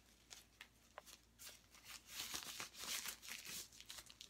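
Thin disposable plastic gloves being handled and pulled on: soft crinkling that builds up in the second half, after a few light clicks.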